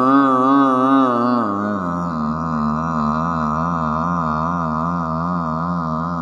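A singing voice holding a long note with steady vibrato, dropping to a lower held note about two seconds in.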